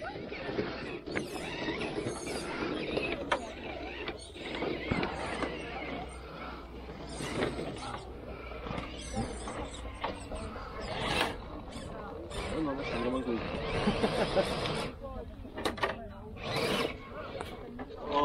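Radio-controlled scale crawler's electric motor and gears whirring as it crawls slowly up a wooden slatted ramp, its tyres clicking and bumping over the boards.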